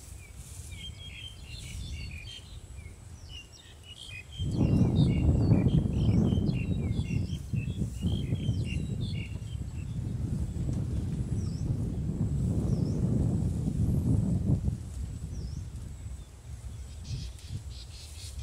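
Small birds chirping with short, high, repeated notes, busiest in the first half. From about four seconds in until about fifteen seconds a loud, low, rustling noise covers them.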